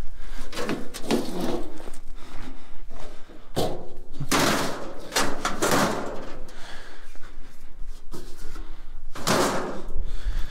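Sheet-metal barbecue grill panels thrown into a pickup bed onto a gas grill and other scrap metal, landing with several loud clattering metal crashes between about four and six seconds in and again near the end.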